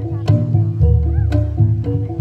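Jaranan gamelan music with a steady beat: a sharp percussive stroke about once a second over repeating pitched metallophone notes and a deep bass. A short high wavering sound cuts in about a second in.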